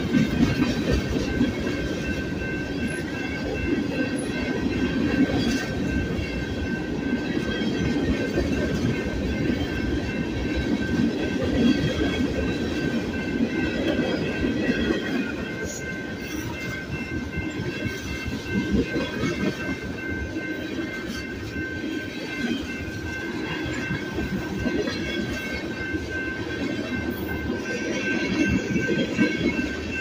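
A freight train of covered hopper cars and tank cars rolling steadily past, its wheels clattering over the rail joints. A steady high-pitched tone rings above the rumble throughout.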